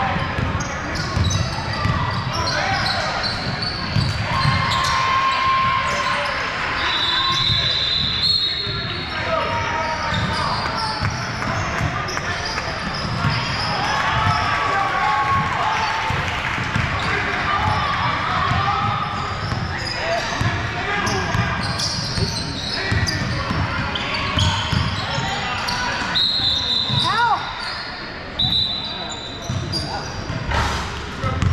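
Indoor basketball game: basketballs bouncing on a hardwood court and sneakers squeaking now and then in short high squeaks, over steady chatter from players and spectators, echoing in a large gym.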